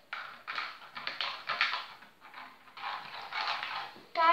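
Plastic zip-lock bag of foam beads rustling and crinkling in short irregular bursts as it is handled.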